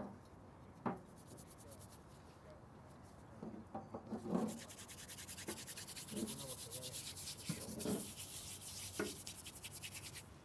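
A small brush scrubbing graffiti-removing liquid across rough granite, in quick repeated strokes that start about halfway through and keep going.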